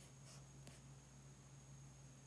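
Near silence: room tone with a faint steady hum and a single faint tick about two-thirds of a second in.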